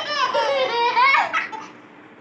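A young child's high-pitched laughter, a quick wavering run of giggles that stops about a second and a half in.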